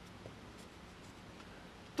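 Faint scratching of a pen writing characters on paper.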